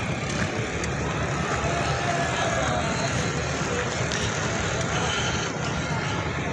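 Motorcycle engine running steadily while riding, with steady road and wind noise.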